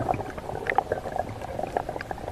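Underwater sound picked up through a waterproof camera housing: water bubbling, with a steady crackle of short irregular clicks.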